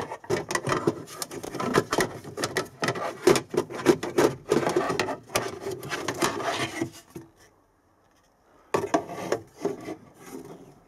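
Plastic glove-box trim pieces being handled and fitted, a dense run of scraping, rubbing and clicking for about seven seconds. After a short pause comes another brief clatter near the end.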